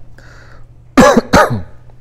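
A man coughing twice into his hand, two short loud coughs about a third of a second apart, about a second in.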